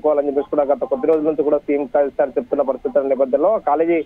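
Speech only: a man's voice reading news narration without pause, sounding band-limited.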